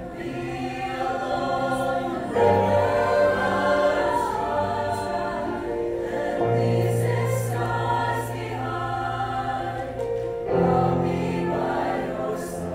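Mixed high school choir singing sustained chords with piano accompaniment, swelling louder about two and a half seconds in and again near the end.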